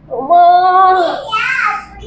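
A woman's two long, high-pitched wailing cries of pain, the second pitched higher and rising, as she clutches her backside after being struck with a stick.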